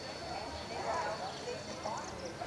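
Indistinct voices of several people talking, with no words clear.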